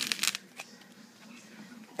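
A hardened bar-top coating being peeled off a countertop by hand: a quick run of crackling, tearing clicks at the start, then a few faint crackles.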